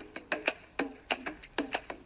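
A quick, uneven run of sharp clicking ticks, about five a second, each with a short low knock under it.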